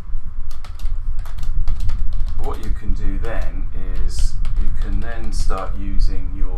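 Computer keyboard typing: a quick run of keystroke clicks over the first couple of seconds. A man's low, untranscribed voice comes in over the second half, with more keystrokes among it.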